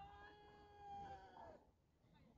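A faint, single long high-pitched cry lasting about a second and a half, holding one pitch and bending down as it ends.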